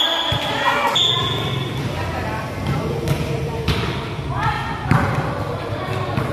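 A volleyball rally: the ball is struck and lands several times, each a sharp hit, while players shout and call to each other.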